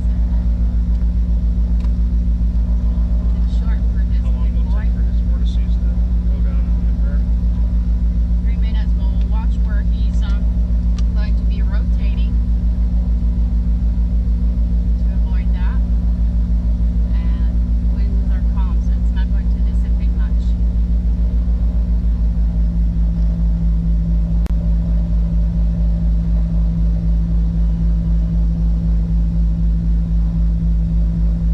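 Beechcraft Baron 58TC's twin turbocharged six-cylinder piston engines running at low power on the ground, a steady low drone with a fast, even propeller beat. Faint radio voices come through in places, and a tone in the drone grows a little stronger about two-thirds of the way in.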